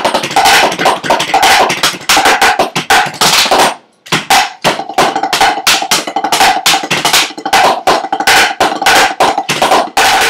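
Drumsticks playing fast sticking patterns on a kit of rubber practice pads: a dense, rapid run of strokes that stops briefly about four seconds in, then starts again.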